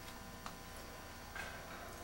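Quiet room noise with a steady low hum, broken by a single sharp click about half a second in and a short rustle near one and a half seconds.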